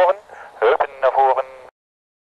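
A person's voice calling out in two short stretches, high-pitched, then cut off suddenly into silence a little before the end.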